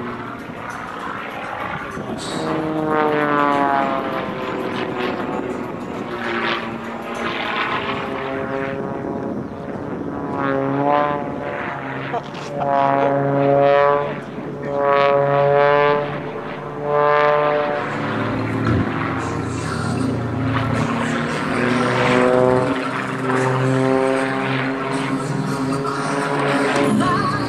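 Extra 330XS aerobatic plane's propeller and engine heard overhead during aerobatics, the pitch repeatedly rising and falling in sweeps as the plane climbs, dives and rolls.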